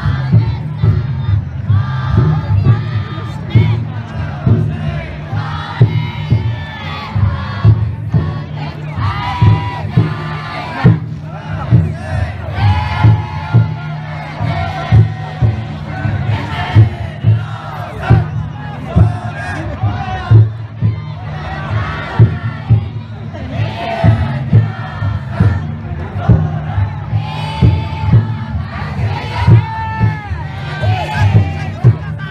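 The taiko drum inside a futon daiko float beats a steady rhythm while the float's many bearers shout a chant in unison over crowd noise.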